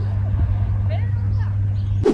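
Steady low drone of a vehicle engine idling close to the microphone, unchanging in pitch, with faint voices in the background.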